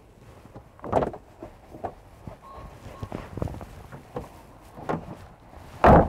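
Rubber boot mat being peeled up and moved about on the ribbed load floor of a Land Rover Discovery 1: scattered knocks and rustles, with a heavier knock about a second in. Near the end, one loud thud of the rear door being shut.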